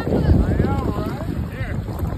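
Wind buffeting the microphone, a heavy rumbling haze, with a person's voice over it.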